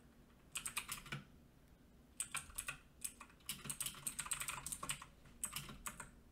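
Computer keyboard typing in several short bursts of keystrokes separated by brief pauses, quiet.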